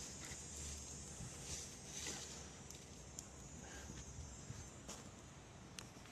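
Faint outdoor background with a few soft, scattered clicks and rustles.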